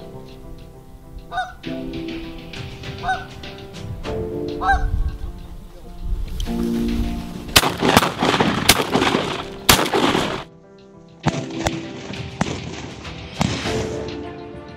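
Canada geese honking over background music: three single rising honks in the first few seconds, then a dense burst of many honks. In the thick of it come two sharp bangs about two seconds apart.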